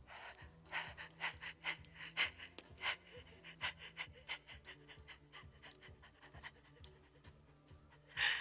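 A terrified, crying woman's rapid panting breaths, about two short breaths a second, growing fainter after about five seconds, over a low sustained music drone.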